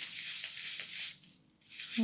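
Scrunched tissue paper rubbed in circles over oil pastel on paper to blend it: a steady papery rustling that stops about a second in.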